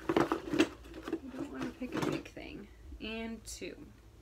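Hands rummaging through a cardboard box of sample sachets and small tubes: rustling with a run of sharp clicks and knocks, loudest in the first second.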